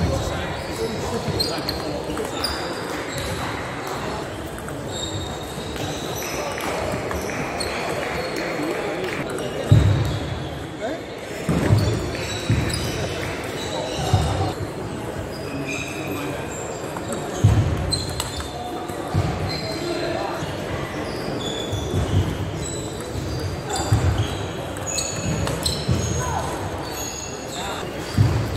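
Table tennis ball knocking on bats and table during play, with sharp knocks coming more often in the second half, echoing in a large sports hall over a steady hubbub of voices.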